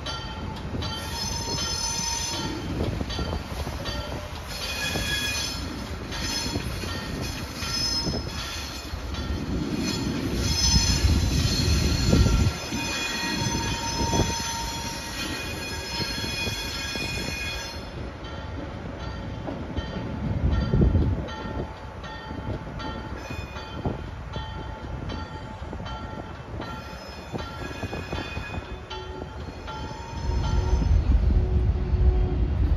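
Alco RS27 diesel locomotive rolling slowly away, its wheel flanges squealing on and off in short high-pitched bursts over the low rumble of its V16 engine. The squealing is heaviest for the first two-thirds and mostly dies away after that, and the rumble swells twice.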